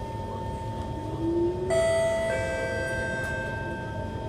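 Two-note electronic chime of an MRT train's public-address system, the second note about half a second after the first, both ringing on. It signals the coming 'next station' announcement. Under it runs the steady rumble and whine of the moving train.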